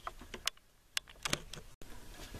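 A handful of light, sharp clicks and taps from handling the camera as it is paused, then a sudden cut to silence where the recording stops.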